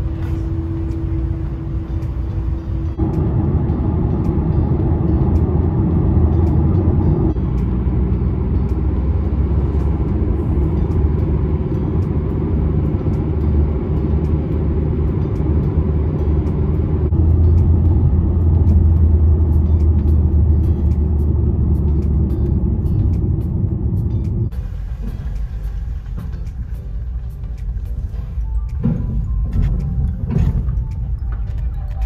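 Low, steady vehicle rumble: road noise heard from inside a car on a highway, and engine rumble on a ferry's car deck. It comes in short clips that cut abruptly every few seconds, with a steady hum over the first few seconds.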